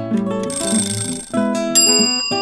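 Background music of plucked acoustic guitar, with a high hissing shimmer about halfway through, then a bright bell-like chime near the end that rings on: a quiz answer-reveal sound effect.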